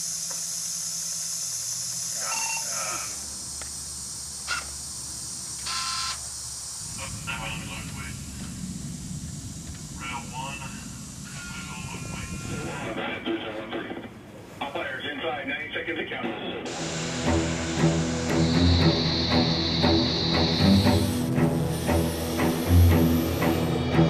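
A steady high hiss with scattered indistinct voices and clicks from the field footage. About two-thirds of the way in this gives way to background music with a steady beat that grows louder.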